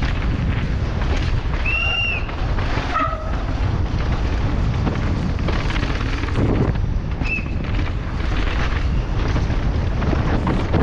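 Wind rumbling on the on-board camera's microphone as a downhill mountain bike is ridden fast down a dry dirt course. Two short high-pitched squeaks stand out, about two seconds in and again past seven seconds.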